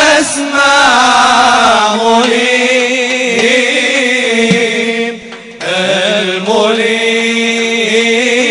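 Male vocal chanting of an Arabic nasheed, an Islamic devotional song, in long held lines whose pitch bends and wavers. There is a short break a little after five seconds, then the chant resumes.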